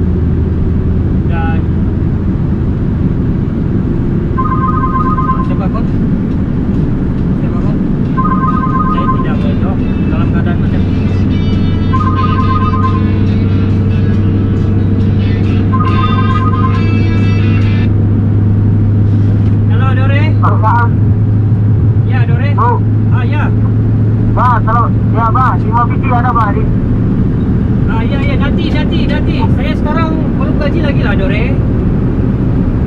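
Steady low drone of a Scania truck's diesel engine at cruising speed, heard inside the cab. A song with a singing voice plays over it.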